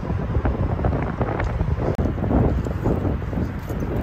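Wind buffeting the microphone outdoors: an uneven, rumbling noise with a brief dropout about halfway through.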